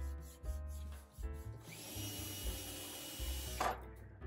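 Background music throughout. A cordless drill/driver runs for about two seconds in the middle: its whine rises as it spins up, holds steady, then cuts off sharply.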